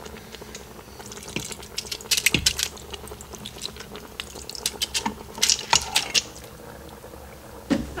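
Home-canned tomatoes sloshing out of a glass canning jar into a stainless steel Instant Pot insert, with a wooden spatula clicking and scraping against the jar and pot. The clicks and knocks come in two clusters, about two seconds in and again around five to six seconds.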